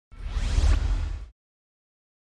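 A whoosh sound effect with a heavy deep rumble underneath, sweeping upward in pitch and lasting just over a second before cutting off.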